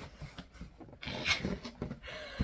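Cardboard shipping box being opened by hand: the flaps scrape and rustle as they are pulled back, with the loudest rustle about a second in.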